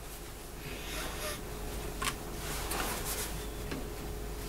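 Faint handling noises from a hurdy-gurdy: light rustles and a click about two seconds in, with a faint steady hum underneath. The instrument is not being played.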